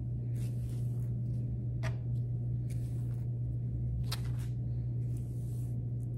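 Hairbrush strokes through long hair, several soft swishes, over a steady low hum, with a few sharp clicks, about two seconds apart.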